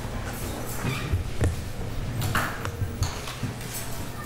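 Scattered knocks and paper rustling as papers are handled at a courtroom bench, with the sharpest knock about a second and a half in and a brief rustle a little after two seconds.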